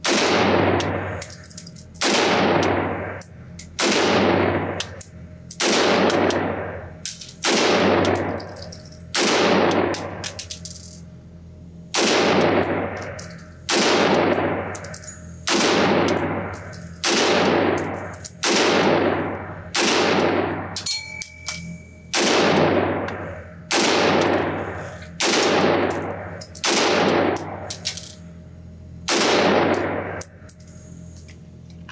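Short-barrelled 5.56 AR-15 pistol fired in slow, steady semi-automatic shots, about one a second with a couple of brief pauses, each shot echoing long through an indoor range, with spent brass clinking.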